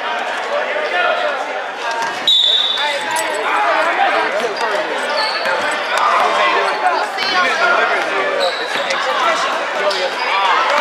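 Spectators talking in a gymnasium during a basketball game, with a basketball bouncing on the hardwood court. A short, shrill, steady tone sounds about two seconds in.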